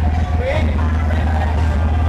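Loud hardcore electronic dance music played by a DJ over a club sound system, with a heavy, unbroken bass.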